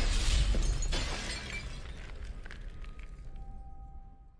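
A porcelain doll shattering as a film sound effect: a sudden loud crash of breaking pieces that dies away over a second or two, over eerie music that leaves a faint held tone near the end.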